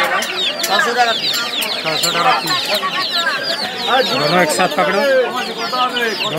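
A crowd of chicks peeping without a break: a dense run of short, high cheeps, each sliding down in pitch.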